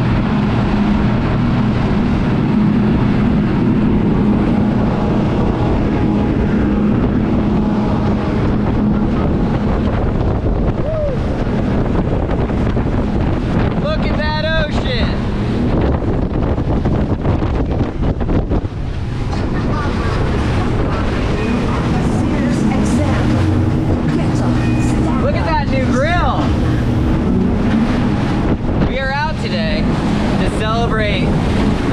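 Three Yamaha 300 V6 four-stroke outboard motors running steadily at cruising speed, with wind buffeting the microphone. A few short wavering voice-like sounds rise over the hum in the second half.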